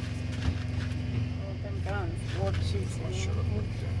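Semi truck's diesel engine idling: a steady low drone heard inside the cab, with quiet talk from about two seconds in.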